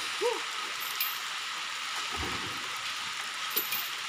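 Heavy tropical rain falling steadily, an even hiss of downpour over everything, with a single dull thump about two seconds in.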